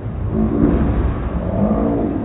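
Bowling alley din slowed down and lowered in pitch by the slow-motion recording: a loud, continuous deep rumble with overlapping drawn-out low tones.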